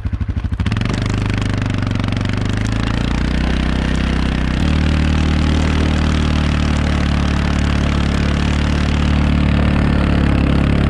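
ATV engine running under load as it pulls through deep snow: a low pulsing throb that picks up into a steady drone about half a second in, then rises again about halfway through.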